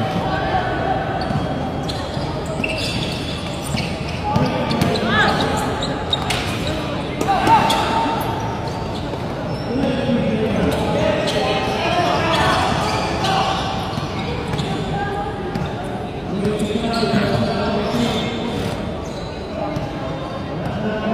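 Basketball game in a covered court: the ball bouncing on the floor, with several voices of players and onlookers calling out and chattering indistinctly, echoing in the large hall.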